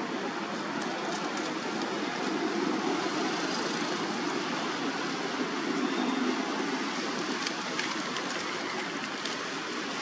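A steady rushing background noise, swelling slightly now and then, with faint light crackles of dry leaves and twigs.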